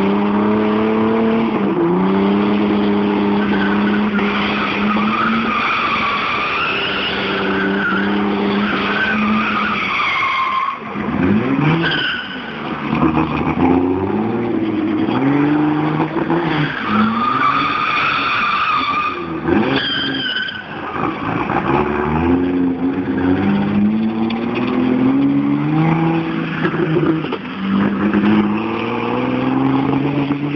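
Turbocharged Opel Omega 2.6 engine held at steady high revs while the rear tyres squeal in a burnout for the first ten seconds. After that the engine revs up and down again and again as the car drives off, with more bursts of tyre squeal.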